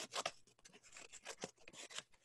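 A sheet of construction paper being handled and folded in half, giving faint, irregular rustles and crackles.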